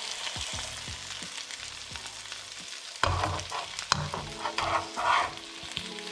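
Parrotfish frying in butter in a nonstick frying pan, sizzling steadily. From about three seconds in, a metal spatula scrapes and clatters against the pan as it works under the fish to turn it.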